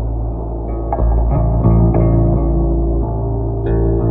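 Ambient instrumental music: a sustained low bass drone under a handful of plucked notes, the last coming near the end.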